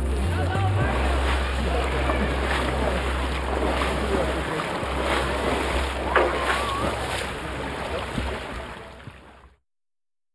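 Water splashing from a swimmer's butterfly strokes in a pool, under a steady low rumble, with voices in the background; it fades out near the end.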